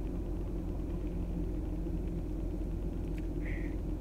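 A car engine idling, a steady low rumble heard inside the cabin.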